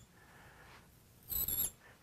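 Felt-tip marker squeaking on lightboard glass as a stroke is drawn: one short, high squeak of under half a second about a second and a half in, after near-quiet.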